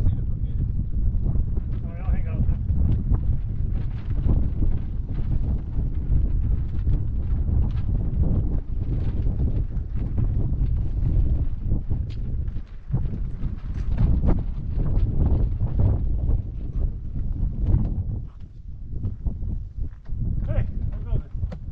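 Wind buffeting the microphone: a constant low rumble that rises and falls in gusts, with brief lulls about 13 seconds in and near the end.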